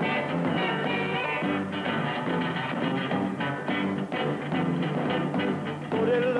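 Rock and roll band playing, led by a rectangular-bodied electric guitar strummed in a steady rhythm over drums.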